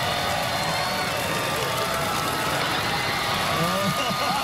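Large crowd cheering, a steady wash of many voices with scattered whoops and shouts.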